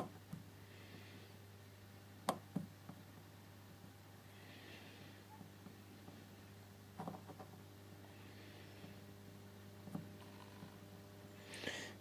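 Faint steady electrical hum from a grid-tie inverter and its rectified DC test supply, with a few light clicks scattered through.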